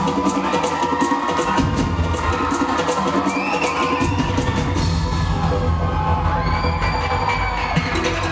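Live band playing an instrumental passage with no singing, with sustained tones over a rhythmic drum beat that drops out about halfway, while the audience cheers and screams.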